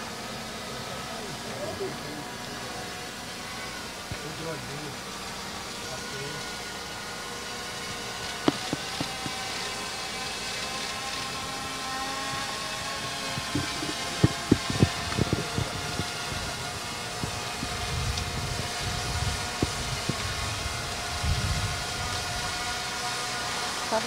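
Small multirotor drone hovering overhead, its propellers giving several steady whining tones that grow slightly louder. A few sharp knocks come in the middle, and low rumbles near the end.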